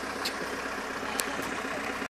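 Off-road 4x4 engine idling steadily. Three brief sharp clicks cut through it, about a quarter second in and twice more past the one-second mark.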